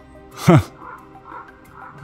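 Large waterfowl calling as it flies overhead: a few short calls, with a sharp exclamation about half a second in.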